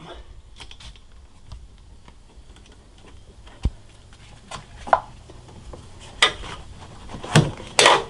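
Hand work on a rubber engine air intake duct and its band clamps: scattered clicks and knocks as the clamps are loosened and the tube is pulled up free, with a few louder knocks in the second half.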